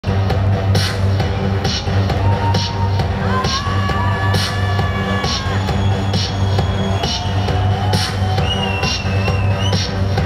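Loud electronic dance music from a live DJ set over a PA system: a steady pounding bass beat with a sharp clap or snare hit a little under once a second. Held high synth tones bend in pitch over the beat in the middle and near the end.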